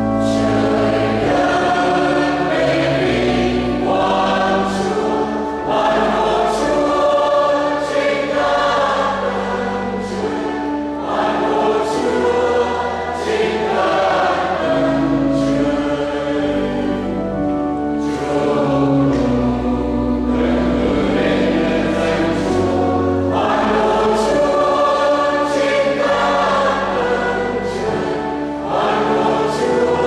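Mixed choir of women and men singing a Vietnamese church hymn in long, held phrases.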